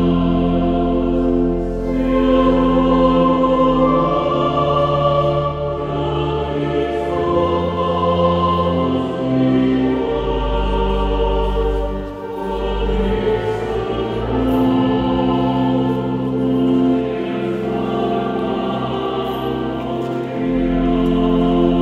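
Choir singing slow, sustained chords, with low held notes beneath, in a reverberant cathedral.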